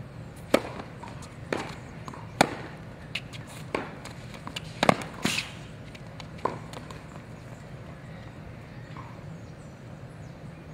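Tennis rally on a hard court: tennis balls struck by rackets and bouncing, sharp pops roughly a second apart, ending after about six and a half seconds.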